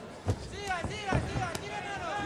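About four sharp thuds of boxing punches landing in a close exchange, with voices in the background.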